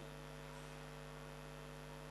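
Steady electrical mains hum in the microphone and sound system: a low, even buzz made of several fixed tones, with no other sound.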